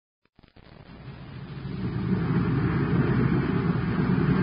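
Radio-drama sound effect of a spaceship's rocket engine in flight: a steady rumbling drone that fades in from silence over about two seconds, then holds.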